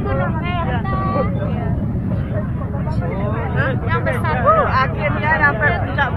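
Crowd chatter: many people talking and calling out at once, several voices overlapping, over a steady low rumble.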